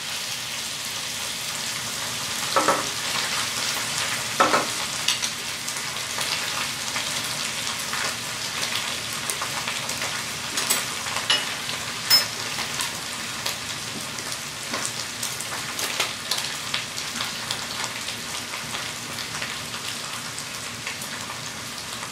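Beef and mushrooms sizzling steadily in a stainless steel skillet, browning over high heat, with a few sharp clicks and knocks scattered through.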